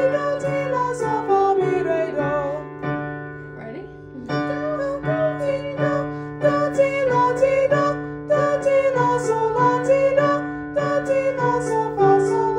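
A voice singing a vocal warm-up exercise, quick stepwise runs up and down a scale on short syllables, over sustained piano chords. There is a brief break about three to four seconds in, then the runs start again.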